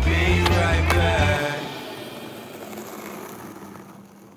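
Background music with deep bass notes that stop about a second and a half in, then fade away. Within the first second there are two sharp clacks, typical of a skateboard's pop and landing on asphalt.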